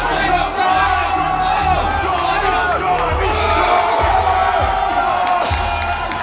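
A crowd shouting and cheering on a bench-press lifter through his reps, over loud background music with a thudding bass beat.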